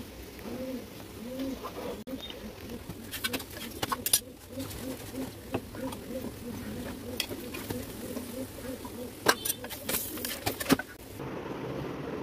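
Low cooing of a bird, repeated over and over, with several sharp clinks of kitchen utensils a few seconds in and again near the end.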